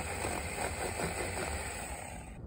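Saker mini electric chainsaw, a small battery-powered one-hand saw, running steadily with a constant high whine as it cuts through a small woody stump.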